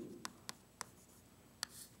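Chalk on a blackboard, writing a row of 1s: four short, sharp taps spread over two seconds, faint.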